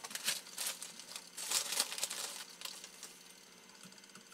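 Plastic bag of sodium carbonate crinkling as it is handled and a spoonful of the powder is scooped out: irregular rustling, loudest in the middle, then dying down.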